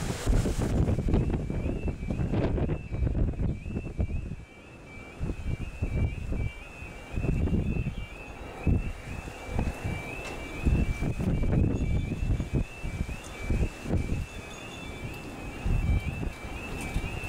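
A UK level crossing's audible warning alarm sounding a repeating two-tone wail, starting about a second in, as the crossing closes for an approaching train. Heavy wind buffets the microphone throughout.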